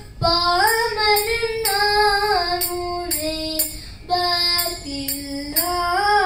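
A young girl singing a Tamil devotional song solo into a microphone, holding long notes that glide from pitch to pitch, with a short breath just after the start.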